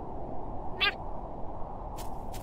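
A cartoon baby penguin's single short, high, wavering squeak a little under a second in, over a steady low background hiss.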